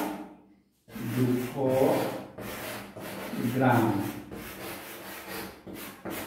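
Chalk writing on a blackboard: a run of short scraping and tapping strokes as numbers are written, starting about a second in after a brief silence.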